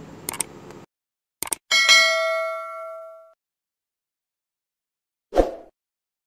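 Subscribe-button sound effect: two quick mouse clicks, then a bright bell ding that rings out for about a second and a half. A short thump comes near the end.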